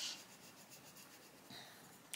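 Faint scratching of a coloured pencil shading on paper.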